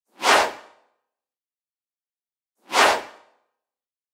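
Two swoosh sound effects, each a quick rush of noise that fades within about a second, about two and a half seconds apart.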